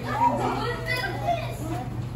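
Several children's voices chattering and calling out at once, over a low steady hum.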